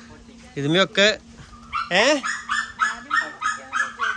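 Two short voice-like calls, then from about halfway through a rapid run of short animal calls, about four a second.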